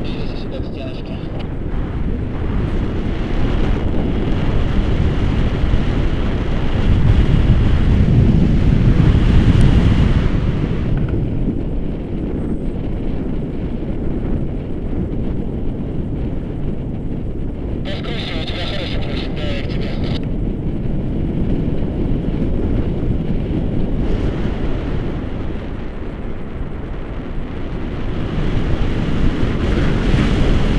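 Wind buffeting the microphone of a camera carried on a paraglider in flight: a dense, steady rumble that swells louder a few seconds in and eases again.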